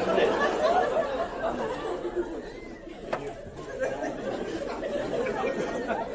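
Indistinct talking and chatter with no clear words, somewhat quieter around the middle.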